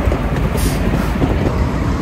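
Steady low rumble of street traffic and wind on the microphone, with a brief hiss about half a second in.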